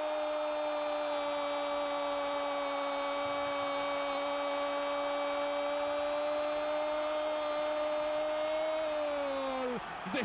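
A sports commentator's long held goal cry, a single "gooool" sustained on one steady pitch for about ten seconds, sagging in pitch and breaking off near the end.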